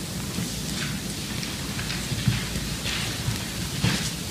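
Steady room hum with scattered rustling and a few light knocks, as papers are handled and people move about between speakers.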